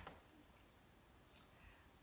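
Near silence: room tone with one faint click at the start and two fainter ticks near the end, from a laptop being operated by hand.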